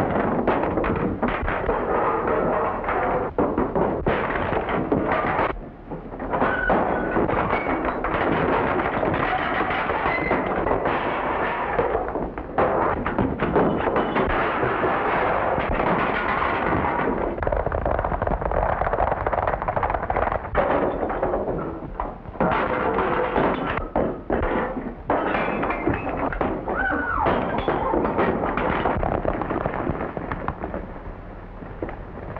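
Film score music playing over a fistfight, with repeated thuds and crashes of blows and furniture throughout.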